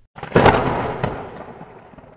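Cartoon magic-transformation sound effect: a sudden burst of noise that dies away over about two seconds, with a smaller crack about a second in.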